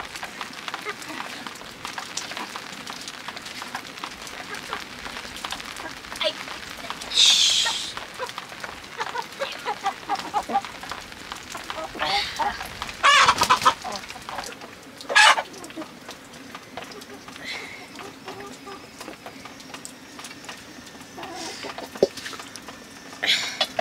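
Domestic chickens clucking, with a few short, loud calls about seven seconds in and again around thirteen and fifteen seconds in.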